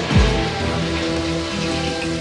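Restroom flushometer valve flushed by its lever: a rush of water, heard over background music.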